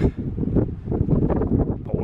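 Gusting wind buffeting a camera microphone that has no wind muff: a loud, low, rumbling rush that rises and falls.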